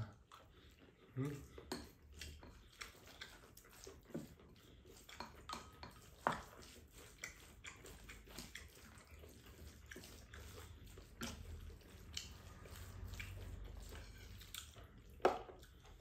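Quiet eating sounds: chewing, with scattered light clicks of chopsticks against ceramic bowls and a couple of sharper clicks.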